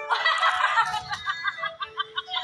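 A woman laughing into a handheld microphone, a loud burst of laughter that breaks into quick short ha-ha pulses.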